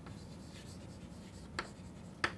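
Chalk writing on a blackboard: faint scratching with light taps of the chalk, the sharpest tap about one and a half seconds in.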